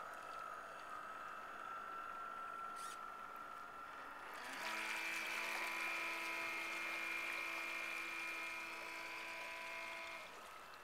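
Motor of an RC model lobster boat running with a steady whine that, about halfway through, jumps to a louder, different pitch and holds there.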